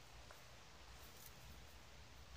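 Near silence: room tone, with at most a faint tick or two.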